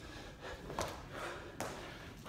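A man breathing hard as he works through full burpees late in a timed set, with two short sharp sounds about a second apart as he pushes up from the floor and brings his feet back in. Faint overall.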